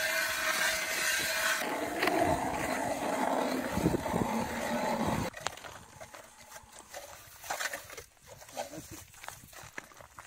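Hand-cranked ice auger boring through lake ice: a steady grinding scrape that drops lower in pitch about two seconds in, then stops abruptly about five seconds in once the blades are through. After that come only light knocks and scrapes as the auger is worked in the slushy hole.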